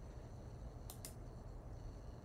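A computer mouse click, heard as two quick faint ticks close together about a second in, over low room hum.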